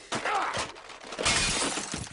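An animated cartoon character yells in rage, then a loud crash of things smashing and breaking comes about a second in.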